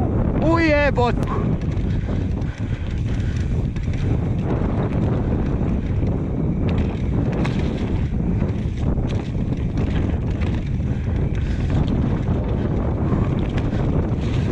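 Downhill mountain bike descending a dirt forest trail: wind buffeting the camera microphone over the rumble of knobby tyres on dirt, with frequent knocks and rattles from the bike over roots and bumps. A short wavering pitched sound comes about half a second in.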